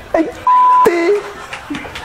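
A short, steady 1 kHz censor bleep, about a third of a second long, laid over a man's speech and cutting off a word.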